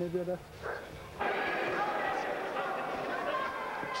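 Crowd noise at a boxing match: a dense, steady din of many voices that starts abruptly about a second in.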